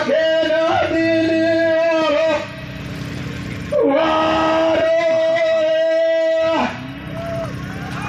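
A man singing a Bhili song into a microphone through a PA system. He holds two long notes of about two to three seconds each, with a quieter gap between them.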